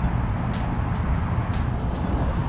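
A steady low rumble of outdoor background noise, with a few faint light ticks high up.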